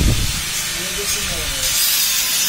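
A steady, loud hiss that grows stronger about halfway through, with faint voices behind it.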